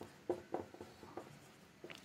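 Marker pen writing on a whiteboard: a run of short, faint strokes as a word is written out.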